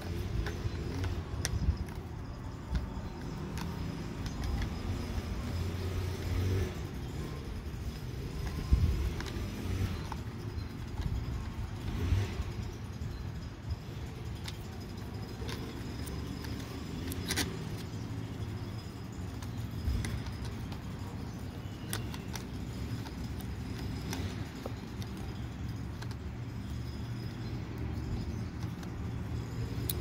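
A small close-quarters tubing cutter being turned slowly around soft copper refrigerant pipe, its wheel scoring the pipe wall, with a few light metallic clicks from the tool, over a steady low rumble.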